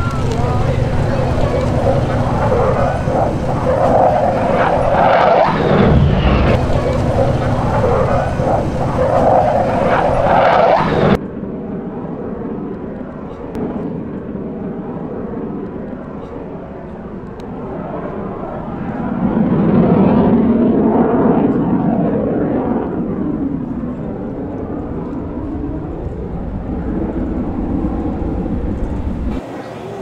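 Boeing F/A-18D Hornet's twin General Electric F404 turbofans, a loud steady jet rumble heard from the ground, with voices in the background. About eleven seconds in the sound cuts abruptly to a duller, quieter take, and the jet noise swells again around twenty seconds in.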